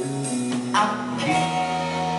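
Live band playing the end of a Brazilian song, a woman's singing voice over guitar and band; a crash hits about three quarters of a second in, then a chord is held steady.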